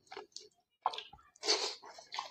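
Chewing and mouth sounds of someone eating chicken curry and rice by hand, in short irregular bursts, the loudest about one and a half seconds in.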